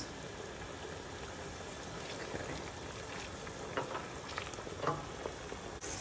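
Wine-based braising liquid with garlic and herbs boiling in a stainless stockpot, a steady bubbling sizzle, as the alcohol in the wine cooks off. A few light ticks come in the second half.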